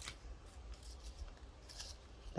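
Faint rustling and a few light clicks of paper die-cut pieces and stamp stickers being handled and shifted in the hands, over a low steady hum.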